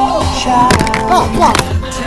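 Background music with a steady beat and sliding pitched tones, with sharp clicks a little under a second in and again about a second and a half in.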